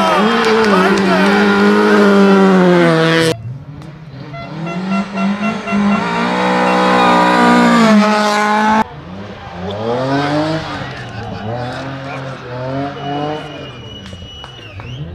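Rally car engines at high revs passing at speed, one of them a classic Lada saloon, in three short cuts. The engine note climbs and drops with gear changes and is loudest shortly before the second cut.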